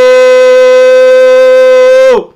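A shofar (ram's-horn trumpet) blown in one long, loud, steady note with a bright, buzzy edge. It holds a single pitch for over three seconds and dips slightly as it cuts off at the very end.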